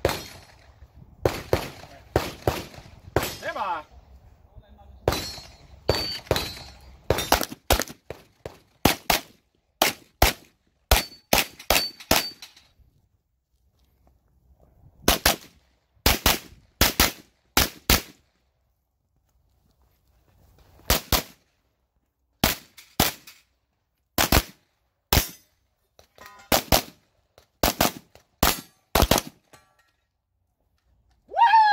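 B&T APC9 9mm short-barrelled rifle firing a stage: sharp shots in quick pairs and short strings, with a pause of a second or two twice as the shooter moves between positions.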